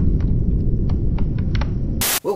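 Heavy, steady low rumble with irregular sharp clicks and ticks scattered over it, the sound bed of an intro title sequence.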